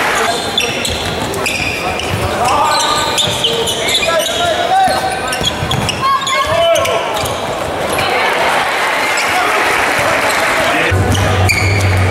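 Live arena sound of a basketball game: the ball bouncing on the hardwood court, sneakers squeaking as players cut and defend, and voices from players and the crowd. A low steady tone comes in near the end.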